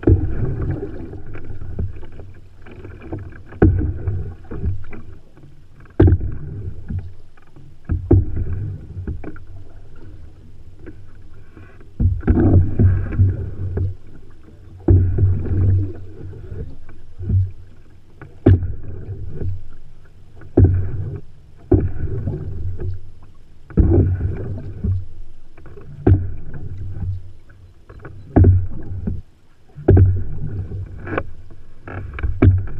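Paddling an open canoe: water splashing and gurgling along the hull. Sharp stroke sounds come every two to three seconds, in an uneven rhythm, over a low rumble.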